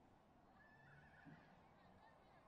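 Near silence: faint open-air ambience, with one faint, wavering call about a second in.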